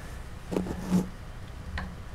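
Hands handling a clay sculpture: a short cluster of rubbing knocks about half a second in, the loudest at about one second, and a light click near the end, over a steady low hum.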